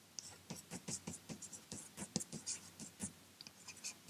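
Chalk writing on a blackboard: a quick run of faint taps and scratches as a word is written, stopping shortly before the end.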